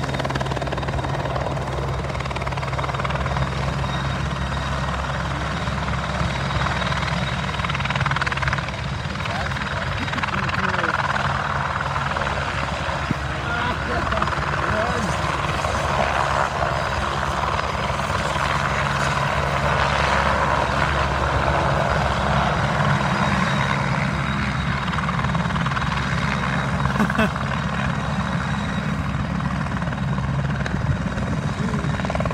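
Airbus Helicopters AS 355 Écureuil 2 twin-turbine helicopter flying low, a steady drone of main rotor and turbines.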